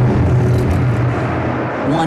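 Industrial hardcore track: a dense wash of distorted noise over a low droning bass, with no clear beat.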